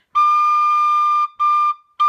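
A D tin whistle played slowly and cleanly: one long held high note, then a shorter repeat of the same note, each separated by a brief breath gap.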